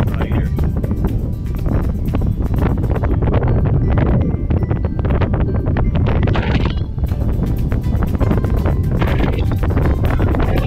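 Wind buffeting the microphone of a camera on a moving vehicle, a steady low rumble, with music playing over it.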